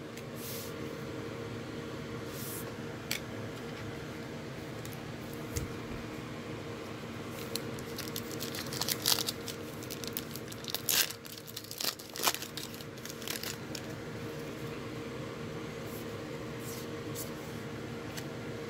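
A trading-card pack's wrapper being torn open and crinkled by hand, with cards sliding against each other. The crackles and snaps bunch up in the middle, over a steady background hum.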